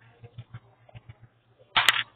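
A cloth button-up dog shirt being handled and shaken out: faint rustling and light clicks, then a short, sharp flap of fabric near the end.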